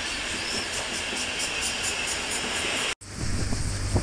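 Passenger train coaches rolling past on the track: a steady rushing of wheels on rails with a fast, regular ticking, about four a second. About three seconds in the sound cuts off abruptly and gives way to wind on the microphone over a steady low hum from a boat.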